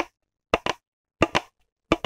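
Fingernails scratching a crumpled green plastic bottle, giving short crackly strokes in quick pairs, about one pair every two-thirds of a second.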